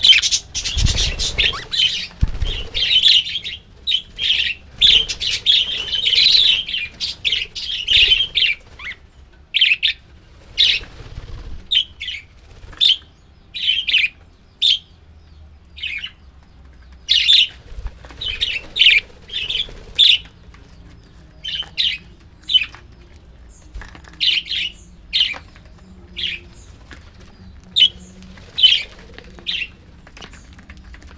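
A flock of budgerigars chirping and chattering: a dense, continuous warble for the first eight seconds or so, then separate short, high chirps every second or so. Near the start there is a flurry of wing flapping as a budgie takes off.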